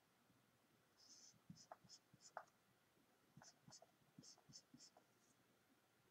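Felt-tip marker writing on paper: faint, short scratchy strokes in two runs, the first about a second in and the second from a little past three seconds.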